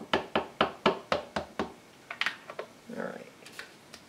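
StazOn ink pad in its plastic case tapped repeatedly onto a wood-mounted rubber stamp to ink it heavily: sharp, even taps, about four to five a second, stopping a little before halfway, then a few lighter clicks.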